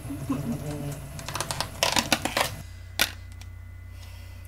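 A quick run of sharp light clicks and knocks about halfway through, and one more click a second later, from something being handled. A steady low hum runs underneath.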